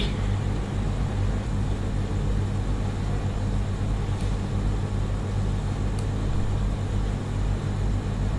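Steady low electrical hum with background noise on the microphone, and two faint clicks about four and six seconds in.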